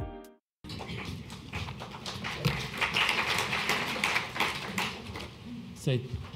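The last notes of plucked-string intro music, then a brief silence, then an audience applauding in a hall. The clapping swells about three seconds in and dies down near the end.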